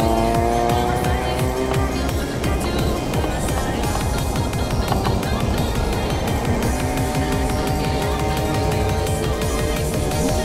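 Background music over a car's engine and road noise; twice the engine's pitch climbs as it revs up, in the first two seconds and again near the end.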